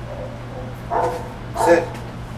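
A dog gives a single short bark about a second in.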